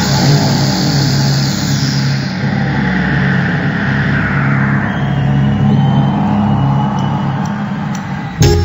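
Synthesizer drone played live: a steady low held chord with a noisy whoosh that sweeps up and then back down over it.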